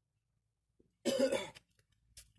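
A person coughs once, a short sharp burst about a second in, with near silence before it.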